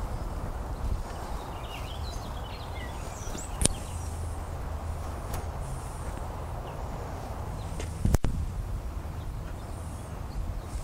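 Quiet outdoor background with a low rumble and a few faint bird chirps about two seconds in. Several sharp clicks cut through it, the loudest one late on.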